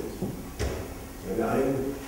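A man lecturing in German into a handheld microphone in a room, with one short, sharp knock about half a second in.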